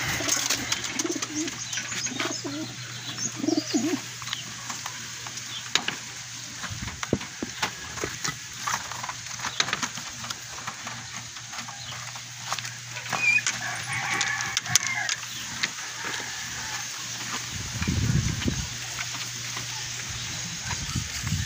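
Racing pigeons cooing in a loft, low and throaty, mostly in the first few seconds and again near the end. Scattered clicks and knocks come from a wooden crate with a wire-mesh door being handled.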